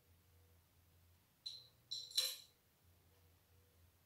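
Three short, high clinks of small hard objects knocked together, quick in succession about a second and a half in, the third the loudest, against faint room tone.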